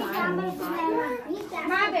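Children's voices talking and calling out words in a small room.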